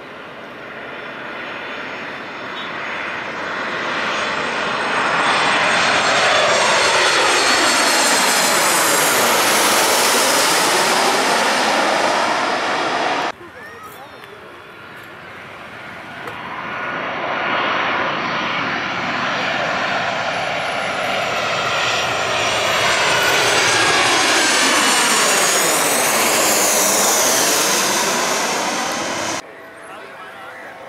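Two jet airliners passing low overhead on landing approach, one after the other. Each engine sound builds over several seconds to a loud whooshing peak that sweeps down and back up in pitch as the plane goes over. Each pass is cut off suddenly, about halfway through and again near the end.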